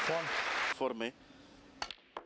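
Audience applause dying away about three-quarters of a second in, with a short voice over it. Near the end comes a sharp double click of snooker cue and balls as a shot is played.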